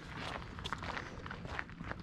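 Faint footsteps of a person walking on a paved road, a soft irregular tread over light outdoor background noise.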